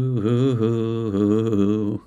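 A female singer holding one long sung note with vibrato, which cuts off abruptly at the end.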